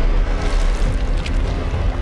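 Dark dramatic score laid over a deep, continuous low rumble, a swell of sound design for a supernatural effect, which grows louder just as it begins.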